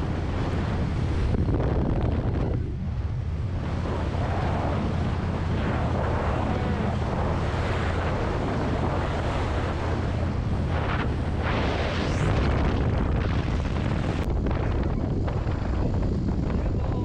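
Wind buffeting the microphone on a moving motorcycle, loudest throughout, with the Harley-Davidson Low Rider S's V-twin engine running steadily underneath at cruising speed.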